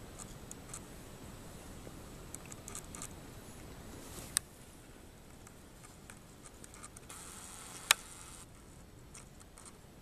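Quiet room noise with faint rustling and light ticks, broken by a short click about four seconds in and a sharper, louder click near eight seconds.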